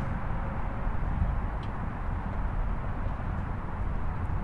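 Steady outdoor background noise: a low, uneven rumble with a faint hiss over it and no distinct event.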